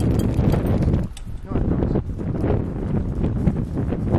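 Rough rustling, scuffling and bumping on a helmet camera's microphone in dry grass just after a bicycle crash, coming in uneven bursts about a second apart.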